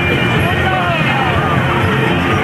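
Crowd voices and chatter over the steady running of a tractor's diesel engine as it pulls a parade float past.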